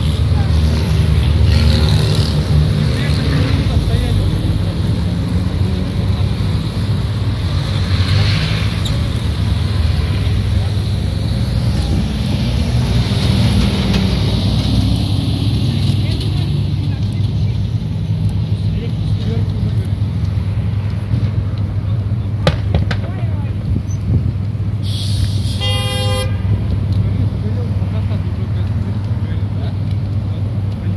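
Road traffic passing on a busy street, a steady low rumble with vehicles swelling past. Near the end a car horn toots once, about a second long.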